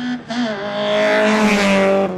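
Small hatchback race car's engine held at steady high revs as the car passes close by, with a hiss building up alongside the engine note toward the end.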